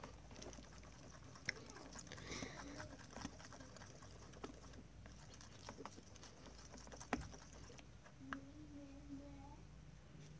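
Very quiet room with a few faint light clicks as a wooden toothpick stirs thick shampoo in a small plastic tub. A faint low tone sounds for about a second near the end.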